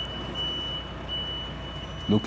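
Heavy truck's reversing alarm beeping, a high steady beep repeating about every three-quarters of a second, over the truck's engine running with a low rumble.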